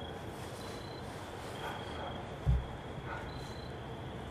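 Quiet night-time outdoor ambience with a few faint, high, thin insect chirps about a second apart. A single low thump comes about halfway through.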